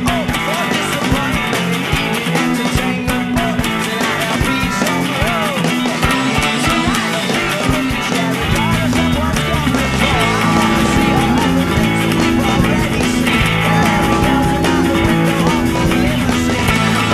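Two electric guitar parts played on a Fender Road Worn '50s Stratocaster through a Line 6 POD HD500, layered over a rock backing track with drums. A low bass line comes in about eight seconds in.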